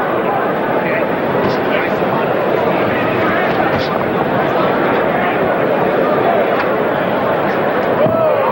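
Boxing arena crowd: a loud, steady din of many voices, with individual shouts rising out of it now and then.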